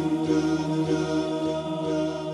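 Slowed, reverb-heavy nasheed: layered voices holding long, steady notes.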